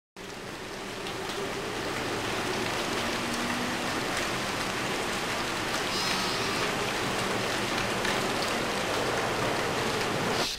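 Steady rain, an even hiss with faint scattered drop clicks, fading in over the first two seconds.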